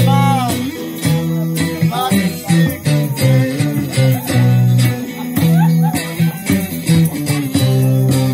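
Live band music from electric guitars played through small amplifiers, sustained low chords repeating with bending lead notes near the start.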